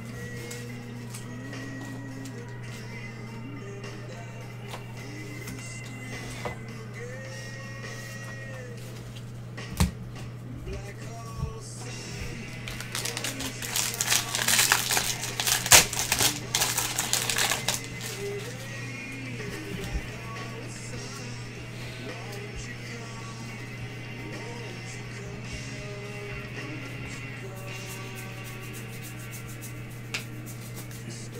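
A baseball card pack's wrapper being torn open and crinkled, a crackly rustle lasting several seconds around the middle, louder than anything else. Quiet background music plays throughout.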